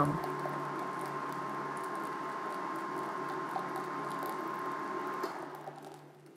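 Wire balloon whisk stirring a liquid egg-yolk and raspberry-purée mixture in a glass bowl: a steady wet swishing with light ticks of the wires against the glass, over a faint steady hum. It fades away near the end.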